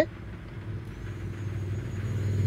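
Handheld electric hot air gun running, a steady low motor hum with rushing air that grows louder toward the end, with a faint high whine joining about a second in. It is heating a new fridge door gasket's corner to soften it so it seals.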